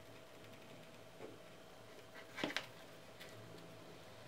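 Shoemaking knife slicing off the lining allowance along the edge of a leather shoe upper: a few faint, short scratchy cuts, the loudest pair about two and a half seconds in.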